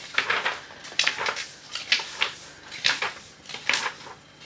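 Sheets of a large pad of designer craft paper being leafed through by hand, making a quick series of paper swishes and rustles, roughly two a second.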